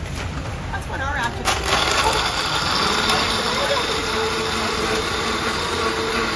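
A steady machine noise, a whirring hiss with faint steady tones, starts suddenly about a second and a half in and runs on, over background voices.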